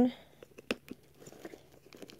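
Faint clicks and scraping of a small metal tool being worked into the plastic front-wheel slot of a roller skate shoe's sole, with one sharper click a little under a second in.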